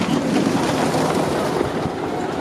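Gerstlauer Infinity Coaster train running along its steel track: a steady, loud rumble of the wheels on the rails.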